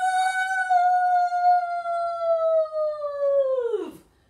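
A high voice holding one long note for nearly four seconds, sinking slowly and then sliding sharply down at the end: a sung rocket blast-off sound after a countdown.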